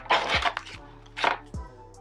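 Laminated vinyl cash envelopes being laid and patted down on a tabletop: three short, sharp slaps, with soft background music underneath.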